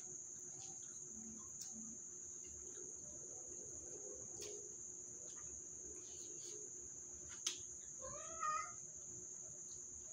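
Crickets keep up a steady high trill. A single sharp click comes about seven and a half seconds in, and a cat meows once, briefly, just after it near the end.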